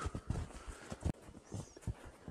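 Footsteps plodding through deep snow: an irregular run of soft, low thuds and crunches, a few steps a second.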